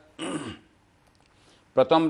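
A man clears his throat once, briefly, then pauses before his speech resumes near the end.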